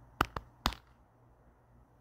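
A man pounding his chest three times: three quick thumps within about half a second, the middle one quieter.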